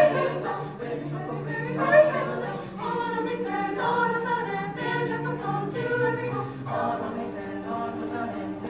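Mixed-voice high school choir singing in harmony, holding long notes over a steady low part.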